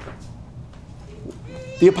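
A pause in a man's speech: quiet room tone with a few faint soft clicks, then his voice resumes near the end.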